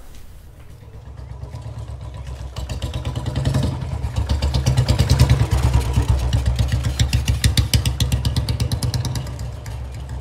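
Royal Enfield single-cylinder motorcycle engine running with a rapid, even thumping beat, growing louder over the first few seconds and loudest in the middle as the bike is ridden past.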